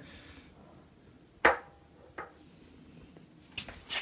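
A few short knocks and rustles of hand-held handling against a quiet room. The loudest is about a second and a half in, a smaller one comes just after two seconds, and a quick cluster comes near the end.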